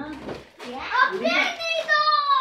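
Children's voices: high-pitched excited exclamations, with a long call near the end that falls in pitch.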